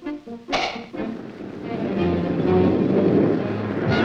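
Cartoon soundtrack: a few stepped orchestral notes, then a sharp hit about half a second in. After that a rushing roar of surf builds from about a second in and stays loud, with low orchestral notes underneath, as a huge breaking wave sweeps in.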